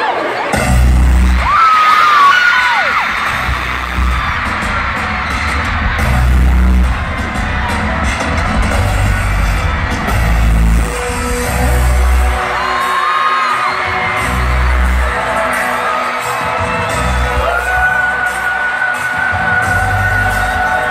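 A stadium concert sound system plays a slow intro of heavy bass booms every two to three seconds, while a large crowd of fans screams and cheers over it.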